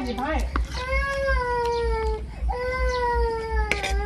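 A cat meowing insistently: two long, drawn-out meows at a steady pitch, each lasting about a second and a half.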